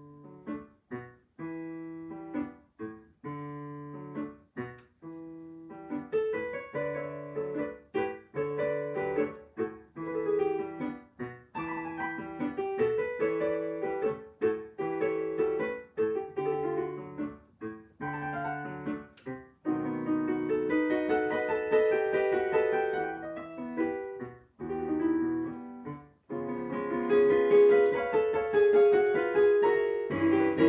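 Digital piano playing a solo piece: short repeated chords over a bass line, growing louder and fuller about two-thirds of the way through and louder again near the end.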